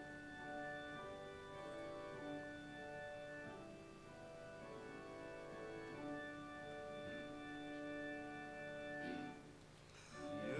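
A church keyboard played with an organ sound, holding slow sustained chords as the introduction to a congregational hymn. The chords fade away near the end.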